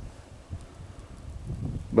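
Quiet outdoor background with a low wind rumble on the microphone.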